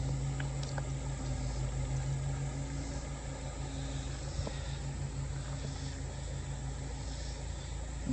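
A steady low hum with a faint even hiss of outdoor background, and a few light clicks in the first second as a stone point is picked up from wet gravel.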